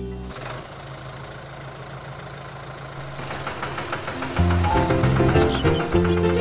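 Cartoon tractor engine sound effect, a low steady running with quick, evenly spaced chugs. About four and a half seconds in, the upbeat music of a children's song starts, with bass notes and a melody.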